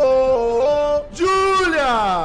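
Music with a sung melody: a voice holding notes and stepping between them. After a short break about a second in, a held note slides down in pitch.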